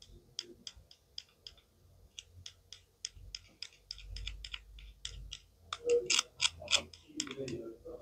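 Plastic toy knife tapping on a plastic toy watermelon slice: a run of light, sharp clicks, about three or four a second, louder and more crowded near the end as the plastic pieces are handled.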